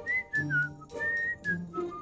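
Cartoon character whistling a short tune: two falling runs of about three notes each.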